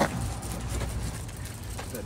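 A low, steady rumble of outdoor background noise, like road traffic, with a short click at the very start.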